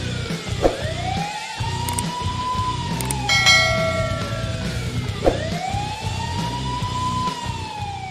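A wailing siren that rises and falls slowly, twice, over music with a low pulsing beat. A short bell-like chime sounds a little after three seconds in, and everything fades out near the end.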